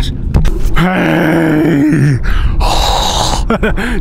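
A few clicks, then a man's voice holding one long, groan-like tone that drops in pitch as it ends, followed by a short hiss.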